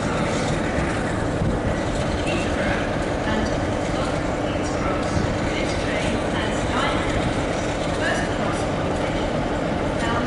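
Diesel locomotive engine running steadily as the locomotive creeps toward the platform: a low rumble with a held hum, with people's voices faintly over it.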